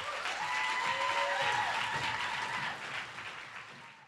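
Audience applauding after a talk ends, with a few voices cheering in held calls. The applause fades away near the end.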